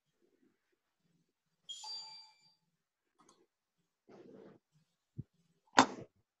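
A short electronic notification chime about two seconds in, a single ringing tone with bright overtones. Near the end come a small click and then a loud, sharp click, the loudest sound here.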